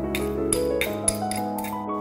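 Background music with sustained tones, over several light clicks and clinks of a knife scraping chopped coriander stems off a measuring spoon into a glass measuring jug.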